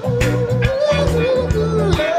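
A rock band playing: electric guitar and drum kit with a low bass line and regular drum hits. Over it one long held note wavers and slides down in pitch near the end.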